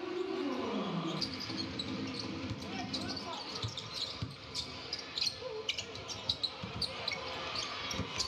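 Basketball being dribbled on a hardwood court, its short, sharp bounces scattered over the steady murmur of the arena crowd.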